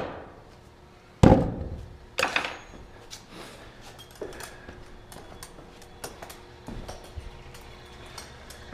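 Two heavy thumps about a second apart, followed by lighter knocks of footsteps going down wooden stair treads.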